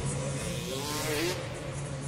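Freestyle motocross bike's engine revving, its pitch rising from about half a second in and peaking a little past the middle.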